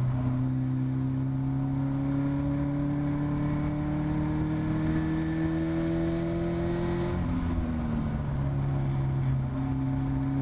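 Caterham Seven race car engine, heard from the cockpit, pulling hard with the revs climbing steadily along a straight. About seven seconds in, the driver lifts off and brakes, and the engine note drops, then steps up again near the end as a lower gear goes in for the corner.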